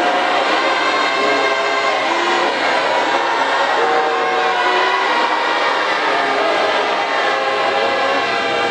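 A large congregation singing a hymn a cappella in many voices. Long held notes step and slide slowly from one to the next, at a steady level.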